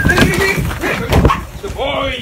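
A working dog whining and yipping, excited on the hunt, among knocks and scuffling, with heavy thumps about a second in.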